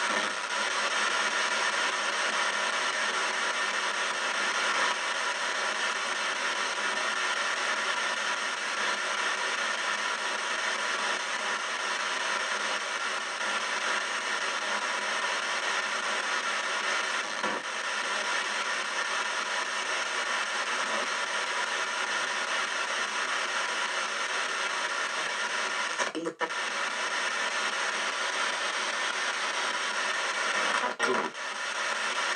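Ghost box sweeping radio frequencies: a continuous wash of radio static with chopped fragments of broadcast sound in it, briefly cutting out near the end.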